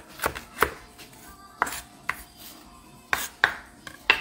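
Kitchen knife chopping on a cutting board: about seven separate strikes at uneven intervals.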